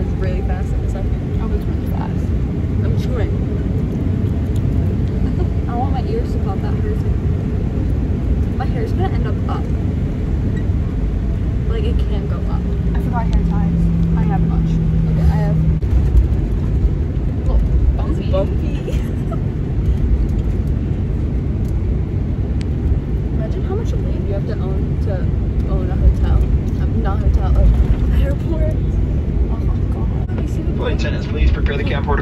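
Steady low rumble of an airliner's engines and cabin noise, heard from inside the cabin, with faint voices over it. A low steady hum joins in for about three seconds midway.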